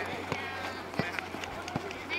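Voices shouting and calling on a children's football pitch, with a few sharp knocks, the loudest about a second in.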